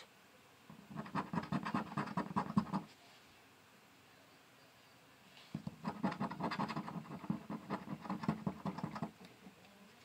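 A penny scratching the coating off a scratch-off lottery ticket in rapid back-and-forth strokes. Two bouts of about two and a half and three and a half seconds, with a pause between them.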